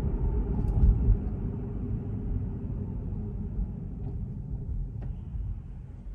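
Road and tyre rumble inside a Tesla electric car's cabin, growing gradually quieter as the car slows from about 30 mph almost to a stop.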